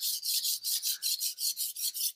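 A Takeda knife's blade being stroked back and forth on a whetstone, its bevel held flat on the stone: an even run of quick, short grinding strokes, about seven a second.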